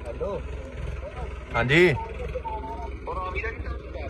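Short, scattered bursts of a man's voice, the loudest a drawn-out call a little under two seconds in, over a steady low rumble.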